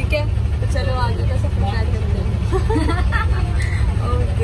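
Steady low rumble of a city bus running, heard from inside the passenger cabin, with voices talking over it.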